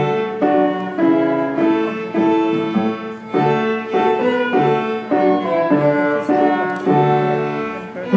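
A solo violin playing a melody of notes about half a second each, accompanied by piano.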